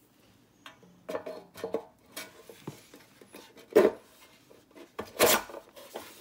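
Metal gear plate being fitted back into a streetlight luminaire's metal housing: a run of scrapes and knocks of metal on metal. The loudest knock comes about four seconds in and another a little after five.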